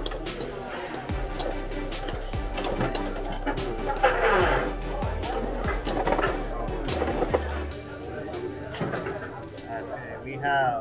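Background music and voices, with many short clicks and scrapes from two Beyblade X spinning tops hitting each other in a clear plastic stadium.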